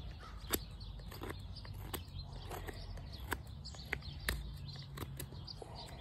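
A blade cutting into a birch spoon blank in short, separate strokes, each a sharp little click or scrape, roughly one every two-thirds of a second, while the spoon is roughed out by hand.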